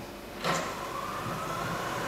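Opening of a live improvised experimental sound piece: a sudden swell of noise about half a second in, settling into a held whistling tone that slowly rises in pitch over a steady hum.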